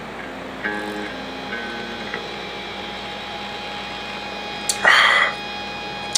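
Faint background music with plucked-string notes while a man drinks from a 40-ounce bottle. About five seconds in comes a loud, short breathy gasp as he comes off the now-empty bottle.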